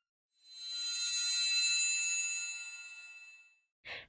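A bright, high, shimmering chime that swells up within half a second and fades away over about three seconds, the sound effect of a channel logo sting.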